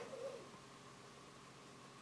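Near silence: room tone, with a faint brief hum at the start.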